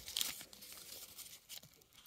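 Paper ball band on a ball of sock yarn crinkling as it is unfolded between the fingers: faint, scattered rustles, the strongest just after the start.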